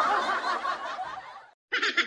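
Laughter that fades out about a second and a half in, then after a brief gap a short burst of rapid snickering near the end.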